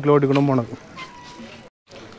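A man's voice speaking with drawn-out vowels for the first part, then quieter background, then a brief dead gap from an edit near the end.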